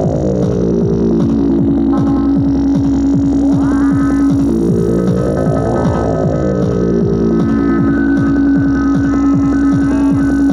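Tribal tekno played on a Korg Electribe R mkII drum machine: a fast run of short percussive hits over a held low drone, with a sweeping sound that rises and falls about every six seconds.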